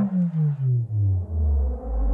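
Cartoon sound effect: a low tone falling in pitch in a series of about six steps, each note longer than the last, a comic sagging sound.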